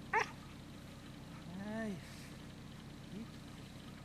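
A dog yelping once sharply, then whining in a long rise-and-fall a second and a half later, with a faint short whine about three seconds in: the unwanted vocalising of a dog being trained to keep quiet while working close to its handler.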